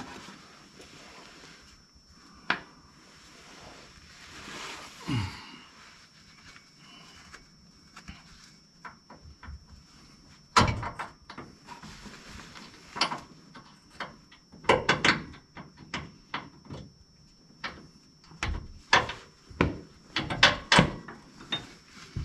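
Hand tools clanking and knocking against the steel underside and front suspension of a pickup truck during wrench work, in scattered sharp knocks with quiet stretches between. Most of the louder knocks fall in the second half.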